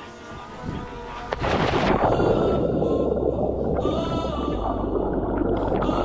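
A splash about one and a half seconds in as a swimmer plunges into the sea with an action camera, then the muffled rush of bubbles and churning water heard with the camera underwater.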